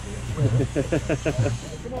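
A person laughing: a quick run of about eight short "ha" bursts over a steady low hum.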